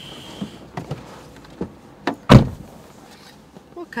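Car door shut with a single loud thud about two seconds in, after a few lighter clicks and knocks as someone climbs into the driver's seat.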